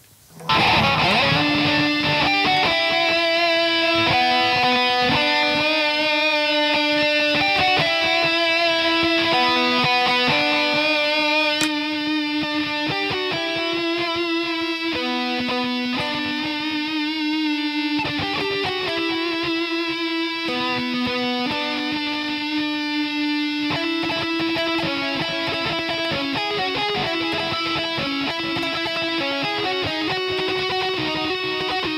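LTD Viper-200FM electric guitar played through effects: a melodic lead line of long, held single notes. It starts about half a second in and eases slightly in volume around the middle.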